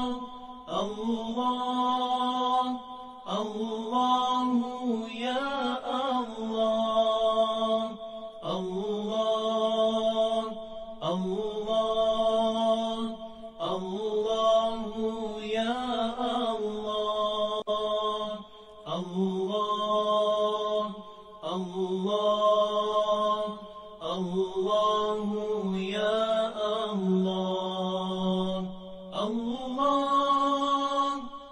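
A single voice chanting melodically in long, held phrases with sliding ornaments, each phrase lasting about two and a half seconds with a short break between, in the style of Islamic devotional chanting.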